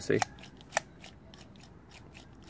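A few light clicks and handling noises from a carburetor being worked by hand, its throttle slide pulled up by the cable and let back. One sharper click comes a little under a second in; the rest is faint.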